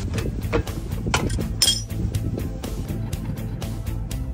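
Background music, with a few sharp metallic clinks about a second in from an open-end wrench working on a brake caliper's guide-pin bolt.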